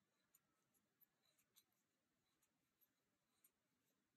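Near silence, with a handful of very faint light ticks from a crochet hook working chain stitches in cotton yarn.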